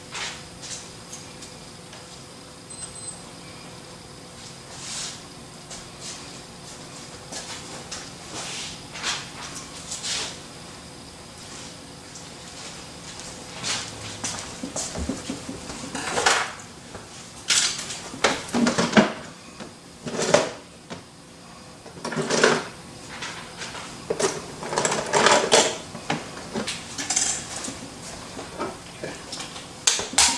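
Intermittent clicks, clatter and rustling as barber tools are handled close to the microphone, sparse at first and busier and louder in the second half.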